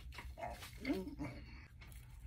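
A man biting into and chewing a thick stacked patty sandwich, with a short, faint, muffled mouth-full hum or grunt about a second in.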